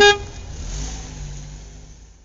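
Logo sting sound effect: a short, loud pitched note right at the start, then a low rumble that fades away over about two seconds.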